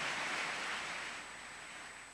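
Audience applauding, the clapping dying away over the last second.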